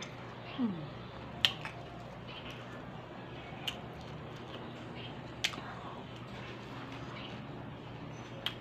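Close-up eating sounds of a person chewing soft boiled banana, with three sharp mouth clicks a couple of seconds apart, the loudest about one and a half seconds in. A short falling-pitched sound comes just under a second in.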